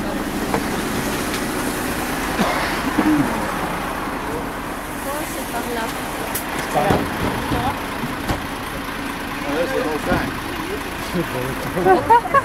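City bus running, a steady hum that eases off partway through, with indistinct voices of people nearby.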